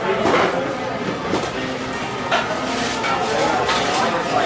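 Background chatter and music in a busy indoor shop, with a couple of brief knocks or clinks about two and a half seconds in and near the end.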